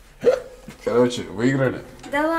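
A person's voice making three short wordless vocal sounds, each bending up and down in pitch.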